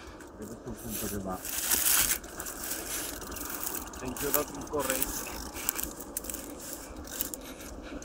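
Scraping and rustling noise, irregular and crackly, louder for a moment about two seconds in, with faint voices at times.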